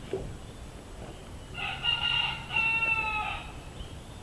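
A rooster crowing once, a call of nearly two seconds in two parts that dips slightly in pitch at the end.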